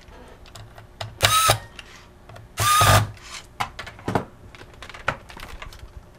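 Small electric screwdriver running in two short bursts, about a second and a half apart, driving the screws of a laptop's memory access door back in. Light clicks and taps of handling the laptop come between them.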